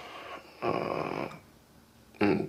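A person's breathing: a soft intake at the start, then a heavier sigh out lasting under a second, about half a second in.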